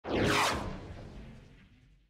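Intro whoosh sound effect: a sudden sweeping swish that fades away over about a second and a half.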